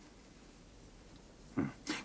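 Quiet room tone for about a second and a half, then near the end two short vocal sounds close together: a man saying a single word and a second brief vocal sound.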